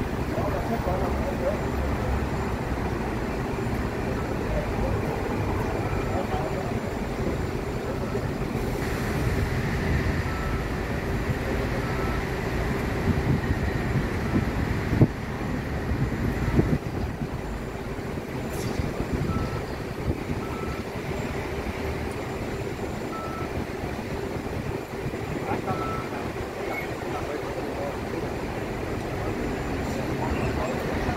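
A city bus running steadily while standing at a bus stop, with short high beeps now and then and a couple of sharp knocks around the middle.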